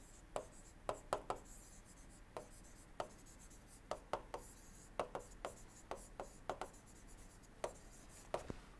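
Stylus writing on a tablet screen: a string of faint, irregular clicks and short scratches, a few per second, as the pen taps down and strokes out each letter.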